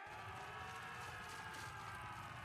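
Faint sustained chord of background music from the anime's soundtrack, held steady over a low rumble.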